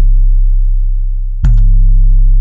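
808 bass sample in FL Studio's sampler playing a deep, sustained sub-bass note, struck again about one and a half seconds in and slowly fading. It rings on after the click is released because the sampler's envelope has not yet been set to cut it off.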